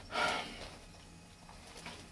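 A short breathy exhale from a person just after the start, followed by quiet room tone.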